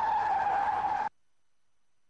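Car tyres squealing in a skid, one steady squeal that cuts off suddenly about a second in, leaving near silence.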